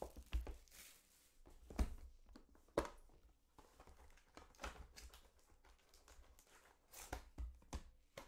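Hard plastic graded-card slabs being handled and set down on a desk: scattered light clicks and knocks, the sharpest about two and three seconds in.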